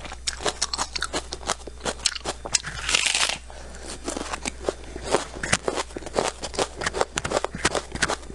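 Crisp, rapid crunching of raw red onion being bitten and chewed close to the microphone, with one louder, longer crunch about three seconds in.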